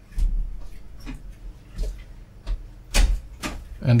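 A small brush scrubbing a copper-clad PCB in a tray of etchant solution, with a handful of scattered clicks and knocks from the brush and board, the loudest about three seconds in.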